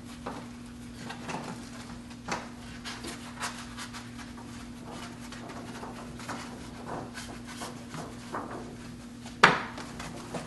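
Silk wall scroll being rolled up onto its bottom rod against a wall: soft rustling and rubbing with scattered small taps, and one sharper knock about nine and a half seconds in.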